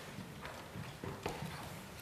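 Footsteps on a hard stage floor: a few soft, spaced knocks, faint against room tone.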